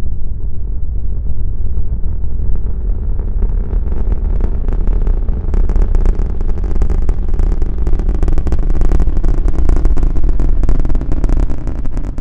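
Space Shuttle liftoff: the solid rocket boosters and main engines give a deep, continuous rumble. A harsh crackle grows in from about five seconds in and stays to the end.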